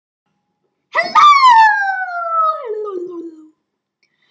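A high female voice giving one long howl, about a second in, that jumps up to a squeal and then slides steadily down in pitch for about two and a half seconds before stopping.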